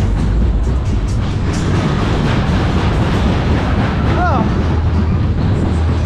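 Superbob fairground ride cars running round the track, heard on board: a loud, steady rumble of the wheels on the rails. A short rising-and-falling pitched sound cuts in about four seconds in.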